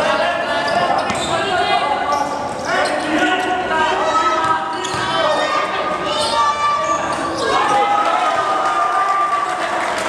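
Live basketball game sound in a large gym: a basketball bouncing on the court amid players' and coaches' voices calling out, with the hall's echo.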